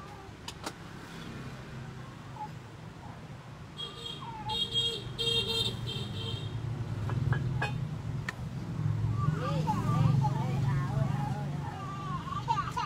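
Road traffic: a passing vehicle engine growing louder through the second half, with a few short horn toots about four to six seconds in.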